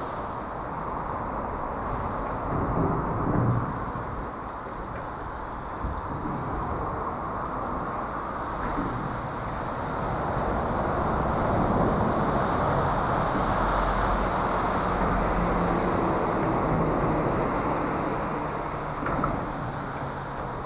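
Steady rumble of road traffic passing overhead, swelling from about ten seconds in and easing near the end, with a short knock near the end.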